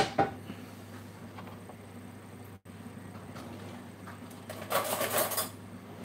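Brief clatter of cutlery and dishes, lasting under a second near the end, over a steady low hum.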